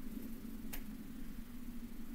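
A single short click about a second in, over a steady low hum of call-line background noise.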